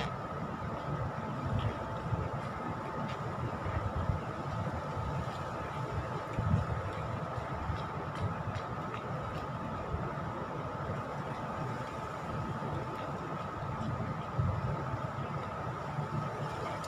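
Steady outdoor city background noise: a low, fluctuating rumble with a faint steady whine and a few faint ticks.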